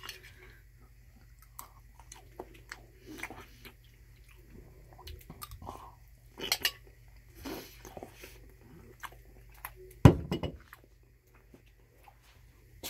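Close-up chewing of spaghetti and stromboli, with a utensil clinking against a bowl now and then. A louder thump comes about ten seconds in.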